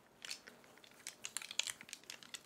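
Cloth of a bundle of five-coloured shaman's divination flags (obanggi) rustling and crinkling as it is unrolled by hand: a quick run of crisp rustles, thickest in the second half.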